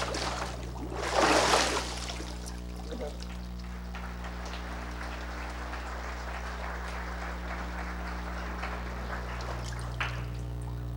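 Water in a baptistry surging and splashing as a man is immersed and brought back up, loudest about a second in, then water streaming and trickling off him at a lower, steady level.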